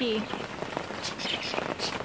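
Steady rain falling on a surface, with many individual drops ticking.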